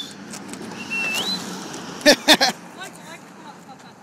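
A short, wavering whistle rising in pitch about a second in, then a loud burst of laughter about two seconds in.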